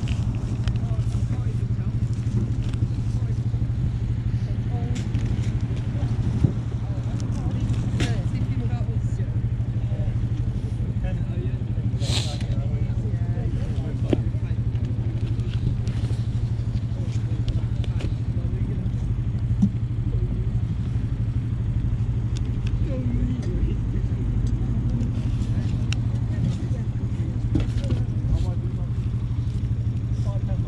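Cardboard LP sleeves being flipped through by hand in a record crate, with light clicks and rustles as sleeves knock together, and one louder rustle about twelve seconds in. All of it sits over a steady low hum.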